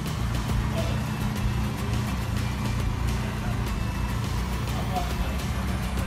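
1988 BMW M3's four-cylinder engine running at a low, steady idle as the car is eased slowly forward, with faint voices and background music underneath.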